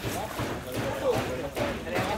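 People talking, with the rush of turbulent water through a sluice gate underneath.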